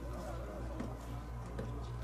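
Outdoor background noise: a steady low hum with faint, indistinct voices in the distance.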